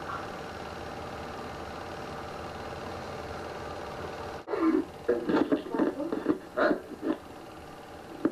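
A steady hum with hiss that cuts off abruptly about four and a half seconds in, followed by people's voices talking indistinctly.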